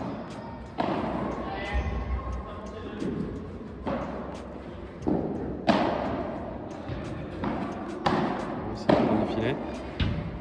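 Padel rally: the ball is struck by rackets and bounces off the court's glass walls and floor, giving sharp thuds every second or so that echo around a large indoor hall.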